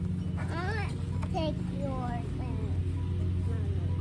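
A steady low hum, with brief faint voice sounds from a child over it in the first half.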